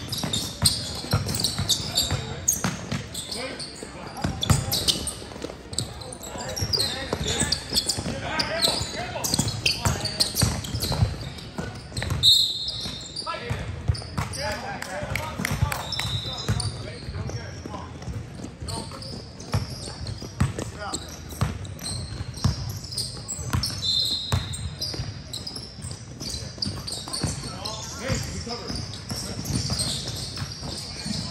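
Indoor basketball game: a ball being dribbled and bounced on a gym floor among running footsteps, with indistinct voices of players and onlookers. Short high squeaks come through a few times, the loudest about twelve seconds in.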